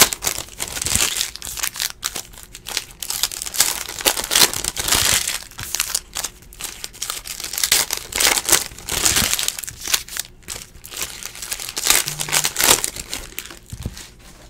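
Foil trading-card pack wrappers crinkling and tearing as they are ripped open by hand, in uneven bursts of rustling that stop near the end.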